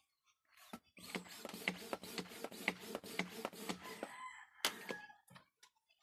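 A chicken calling, in what sounds like a rooster's crow, pulsing and lasting about three seconds, followed by a single sharp click.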